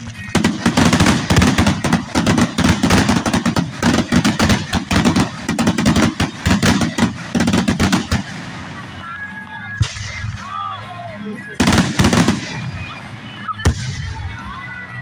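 Fireworks display: a rapid barrage of many bangs and crackles for about eight seconds, then a quieter stretch broken by a few more short clusters of bangs.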